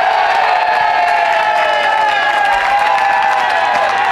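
A group of baseball players cheering together in a dugout: many voices holding long shouted cries at about the same pitch that slowly sag, over steady clapping.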